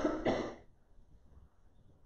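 A person clearing their throat: two short, rough rasps in quick succession in the first half second.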